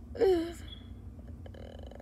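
A child's short burp about a quarter second in, lasting under half a second, with a falling pitch.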